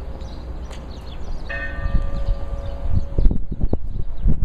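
An Orthodox church bell is struck about a second and a half in and rings with several overlapping tones for about a second and a half before dying away. A steady low rumble runs underneath, and a few sharp knocks come near the end.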